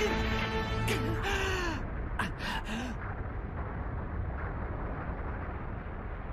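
Anime battle soundtrack. Music holding steady notes is joined by short, arching vocal cries over the first three seconds. The music then drops away into a steady low rumble as dust and smoke settle.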